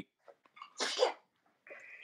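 A single short, sharp burst of breath from a person, about a second in.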